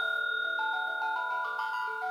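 Electronic music from an iPhone app: a slow run of clean synthesized notes, each held and overlapping the next, over a steady high tone.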